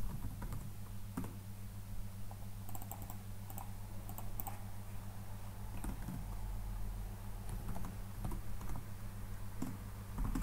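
Computer keyboard typing: scattered, irregular keystrokes over a steady low hum.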